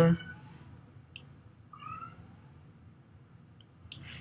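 Quiet room tone with a single sharp click about a second in, then a brief, faint, high-pitched mewing cry about two seconds in.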